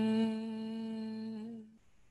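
A human voice humming one long, steady note that breaks off near the end.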